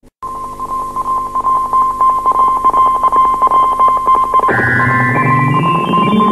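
An instrumental early reggae recording starts just after a brief silence. A steady high held note runs through it, and a little past halfway a lower line climbs step by step in pitch.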